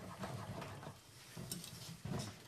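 Faint rubbing strokes of a steel plane iron's flat back on an 8,000-grit waterstone, removing the wire edge, over a steady low room hum.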